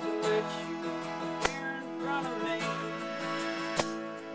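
A small band playing a song live, guitar-led with sustained keyboard notes. Two sharp hand-percussion hits, from a jingled hand drum like a tambourine, come about a second and a half in and again near the end.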